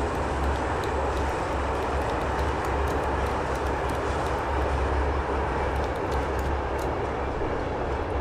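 Steady low rumble and hiss of a moving train, heard from inside the carriage.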